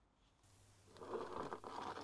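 Near silence at first, then from about a second in a continuous scraping and rustling handling noise from hands and jacket sleeves working around the front brake caliper close to the microphone.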